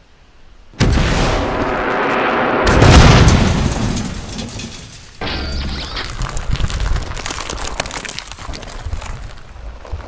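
Film sound-effect blast and explosion: a sudden burst about a second in, then a very loud, deep boom that slowly dies away. About five seconds in comes a second sharp crash, followed by crackling debris.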